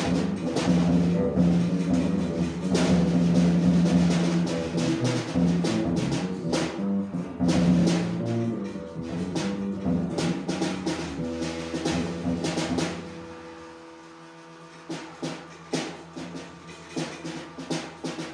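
Improvised noise music: dense, irregular struck percussive hits over a sustained low drone. About thirteen seconds in it drops much quieter, leaving a softer drone with a few scattered hits.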